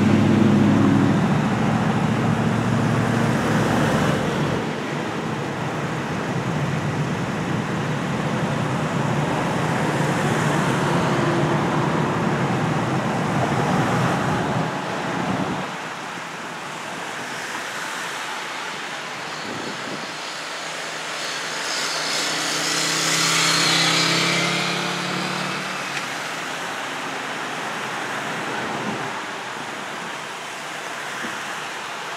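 Road traffic passing: the engine hum and tyre noise of cars and pickups driving by, loud in the first half and dropping away about halfway through. A second vehicle then swells past with rising tyre hiss and fades.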